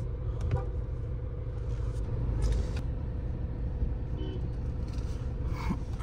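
Mahindra Scorpio N heard from inside its cabin: a steady low rumble of engine and road, with a faint steady hum above it.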